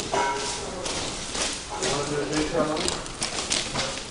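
Two children playing a hand-clapping game: a run of quick hand claps, about two or three a second, with their voices over them.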